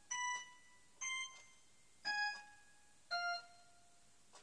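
Electronic keyboard playing a slow melody of single high notes, four in all, about one a second, each struck cleanly and dying away; the last two step down in pitch.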